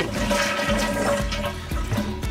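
Toilet flushing as the trip lever is pressed, water rushing out of the tank into the bowl. The supply valve has been shut off, so the tank drains without refilling.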